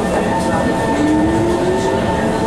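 Interior of an SMRT North-South Line MRT train car pulling away from a station: steady running noise of the car with a rising whine from the traction motors as it picks up speed.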